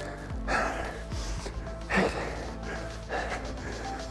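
Background music under a man's forceful breaths, one short exhale with each kettlebell swing, about every second and a half.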